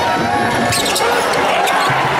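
Basketball game sound on court: sneakers squeaking on the floor and the ball in play, over steady crowd noise echoing in a large arena hall.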